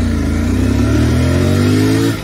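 Royal Enfield Continental GT 650's 648 cc parallel-twin engine pulling hard under full throttle. Its note climbs steadily as the bike accelerates through a gear.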